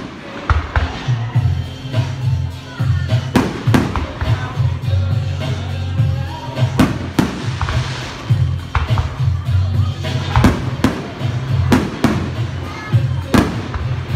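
Aerial firework shells bursting: about a dozen sharp bangs at uneven intervals, a few in quick pairs. Loud music with a strong bass line plays throughout.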